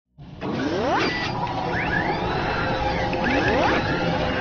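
Sound effects for an animated logo intro: a dense mechanical whirring and clattering with rising swooshes, one about a second in and another near the end.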